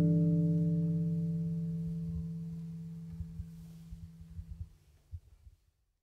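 Final chord of a double bass and an acoustic jazz guitar ringing out and slowly dying away, fading to silence about five seconds in, with a few faint low knocks near the end.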